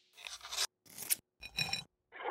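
Three short, scratchy noise bursts, each about half a second long and cut off abruptly with dead silence between them: an edited sound-design effect for an animated title.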